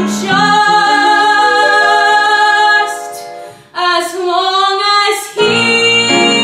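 A young woman's solo voice singing a musical-theatre ballad over piano accompaniment: one long held note, then a short phrase that rises in pitch, with a full piano chord coming in near the end.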